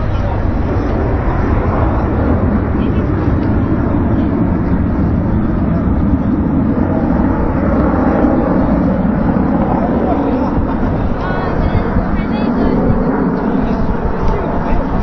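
Aircraft in flight at an air display: a loud, steady engine rumble that swells somewhat in the middle.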